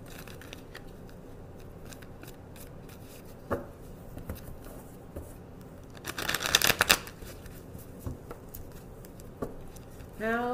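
A deck of tarot cards being shuffled by hand: scattered soft card clicks, a sharp tap about a third of the way in, then a rapid flurry of card flicks lasting about a second, a little past halfway, the loudest part.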